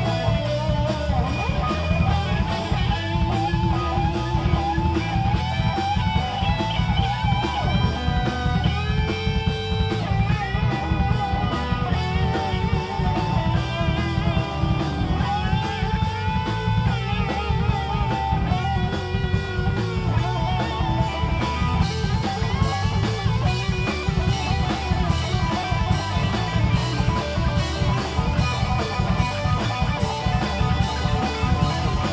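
Live rock band playing: an electric guitar plays a lead of held, bending notes with vibrato over steady drums and bass guitar.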